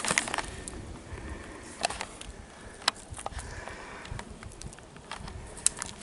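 Footsteps and a walking stick on a dry, leaf-strewn dirt trail: soft crunching with scattered sharp clicks at irregular intervals.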